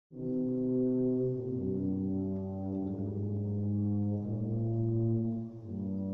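A wind band's brass section playing slow, sustained low chords at the opening of a Spanish Holy Week processional march, the chord changing about every second and a half, without drums.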